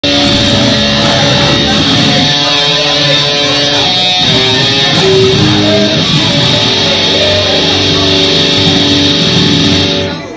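Instrumental rock music led by an electric guitar playing a melody of held notes.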